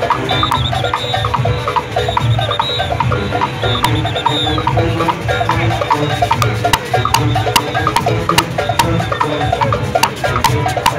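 Live Junkanoo band playing: goatskin drums beating steadily with rapid cowbell clanging, several strikes a second, and held horn notes over them.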